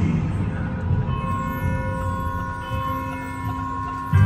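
A soft, sustained musical chord of several steady held tones enters about a second in, part of a marching band's show music, over a low rumble of a large hall.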